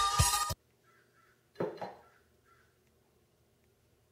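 Sensor-controlled live electronic music stops abruptly about half a second in. About a second later a cup or glass knocks once on the desk, and a few faint high chirps sound before and after it.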